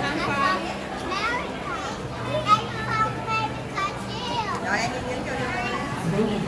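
Young children talking and calling out, over background chatter, with a low steady hum underneath.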